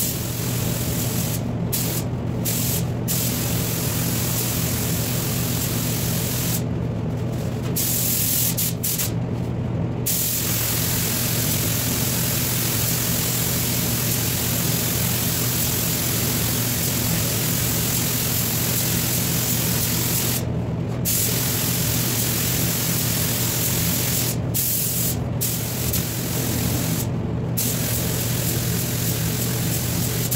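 Air spray gun hissing as automotive paint is sprayed onto a car fender, the hiss cutting off briefly about ten times as the trigger is let go between passes. A steady low hum runs underneath.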